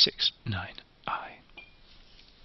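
A man's voice muttering softly, half-whispered, for a little over a second, then faint room tone.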